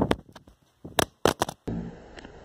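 A smartphone falling and hitting a hard surface, clattering with a rapid string of sharp knocks as it bounces and tumbles, heard close through its own microphone. This is the fall that breaks the phone.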